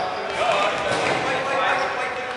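Players' voices calling and shouting across a reverberant sports hall, mixed with dodgeball thuds on the wooden court floor.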